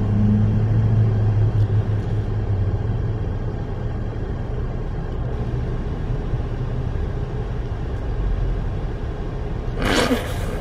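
Steady rumble of an idling vehicle and passing road traffic, heard from inside a truck's cab, with a low hum that fades in the first second or two. A sudden loud rush of noise comes near the end.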